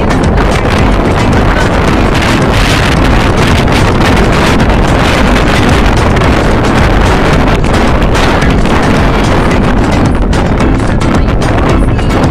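Strong wind buffeting the microphone in a loud, steady roar, with breaking surf mixed in beneath it.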